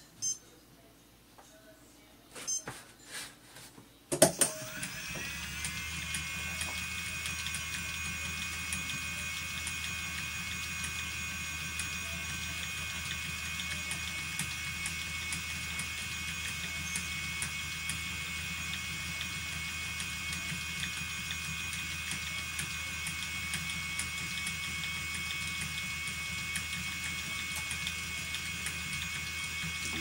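Phoenix electric spinning wheel's motor switched on with a click about four seconds in, its whine rising in pitch and settling into a steady hum while it drives the flyer and bobbin. A few faint handling clicks come before it starts.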